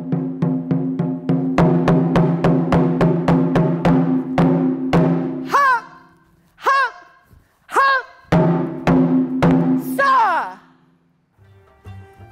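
Taiko drums, a chu-daiko and a shime-daiko, struck with bachi. An even run of strikes, about four a second, lasts for the first five seconds. Then come single hits, each with a shouted "hup!", a few more heavy hits, and a final drawn-out shout of "sa!" about ten seconds in.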